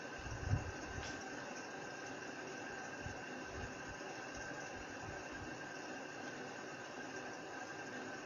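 Steady background hiss of room noise, with a few soft low bumps about half a second in and again around three and five seconds in.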